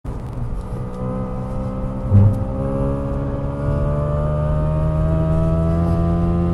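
Car engine pulling hard under acceleration from inside the cabin, its drone rising slowly and steadily in pitch as the speed climbs, with one short thump about two seconds in.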